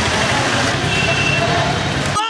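Steady outdoor street din: vehicle engines running with background voices mixed in.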